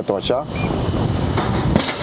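Wind buffeting the microphone with a steady rumble, and a short electronic beep about half a second in from the drink vending machine's selection button being pressed.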